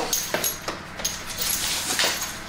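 A French bulldog chasing a ball across a hard floor: a few short scuffling noises, about half a second apart.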